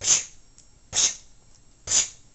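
A person's voice making three sharp, breathy bursts, about one a second, each dying away quickly.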